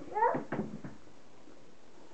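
A toddler's brief high-pitched vocal sound, sliding up and down in pitch, in the first half second, then quiet room tone.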